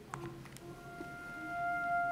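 The opening of a recorded song played back over the hall's sound system: a faint click, then a single sustained note fading in and slowly growing louder.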